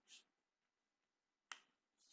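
Near silence, with one faint sharp click about one and a half seconds in: a key press on a computer keyboard.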